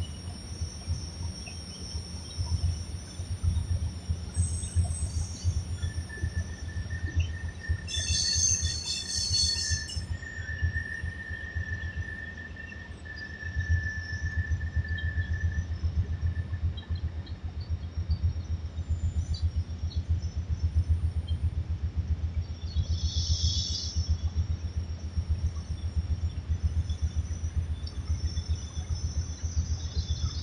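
Wind buffeting the microphone in a steady, fluttering low rumble. A thin, high steady squeal holds for about ten seconds in the first half. Short high chirps come twice, once about a third of the way in and again later.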